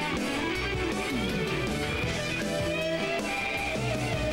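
Rock band playing live through a stage PA, an instrumental passage led by electric guitar with bending, gliding notes over rhythm guitar and bass.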